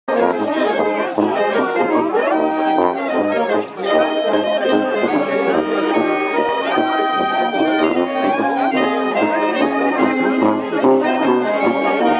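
Small brass band with trumpets playing a folk tune outdoors. Sustained melody notes run over a bass line that sounds on every beat.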